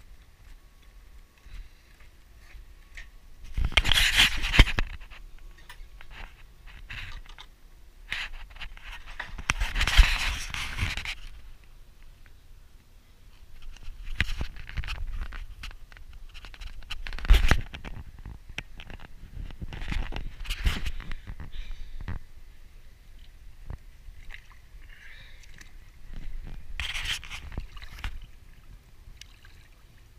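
Irregular scraping and rubbing noise in several separate bursts, the loudest about 4 and 10 seconds in: handling noise on the microphone of a hand-carried camera.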